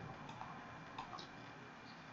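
A few faint clicks of a computer mouse, two of them close together about a second in, over quiet room tone.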